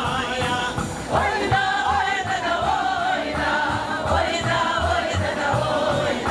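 Choir singing a song over instrumental accompaniment with a steady, regular low beat.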